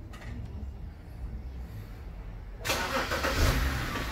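2010 BMW X5 engine running at a low, steady idle just after being remote-started. About two and a half seconds in, a loud steady hiss comes in over the engine.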